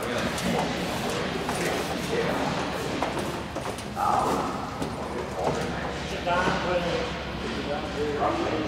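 Indistinct voices of people talking in a large, echoing hangar, with scattered light knocks and clicks in the first few seconds.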